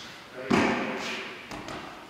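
A body hits a tatami mat with one heavy thud about half a second in, followed by a couple of lighter knocks on the mat. It is an aikido partner being thrown face-down into a nikyo pin.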